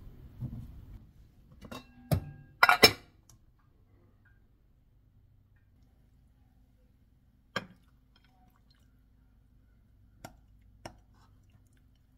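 Kitchen utensils and dishes knocking and clinking while food is served: a wooden spoon working rice in a metal pan and a plate on a countertop. A quick cluster of sharp knocks about two to three seconds in is the loudest, then a single knock near the middle and two more near the end.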